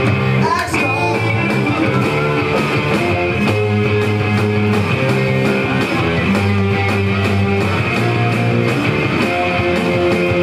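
Electric guitar played through an amplifier in a loud punk rock song, with chords sustained and changing.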